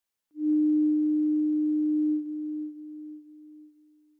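A single steady electronic tone, low to mid in pitch, starts just under half a second in, holds for about two seconds, then dies away in a series of echoing steps.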